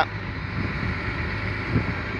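Caterpillar 120K motor grader's diesel engine idling, a steady low hum.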